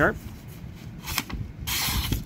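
A Zero Tolerance 0920 folding knife's recurve blade slicing through a sheet of paper: a short cut about a second in, then a longer one near the end. The factory edge cuts a little toothy closer to the tip.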